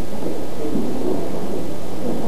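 Steady rushing hiss with a low hum underneath, the noise floor of a worn old videotape recording; it stays even throughout.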